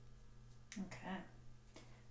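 One sharp click about three-quarters of a second in, straight into a short murmured vocal sound, over a faint steady low hum.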